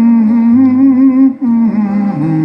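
A man's voice holding a long, slightly wavering sung note without words over an acoustic guitar. The note breaks about a second and a half in and a new note starts.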